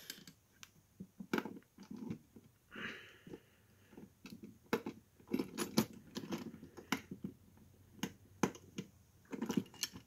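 A small screwdriver working a screw loose from the underside of a 1/32 die-cast model tractor, with scattered light clicks and taps as the tool and model are handled on a table.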